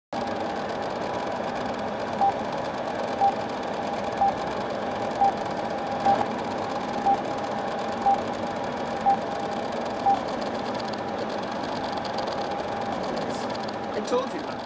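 Old film countdown leader sound effect: short beeps once a second, nine in all, over a steady film-projector whir and crackle. The beeps stop a few seconds before the end while the whir goes on.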